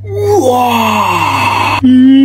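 A person's voice making a long, falling "oooh" wail, followed near the end by a louder held note.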